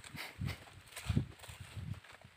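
Footsteps on dry, leaf-strewn soil: three dull thuds about two-thirds of a second apart, with faint rustling.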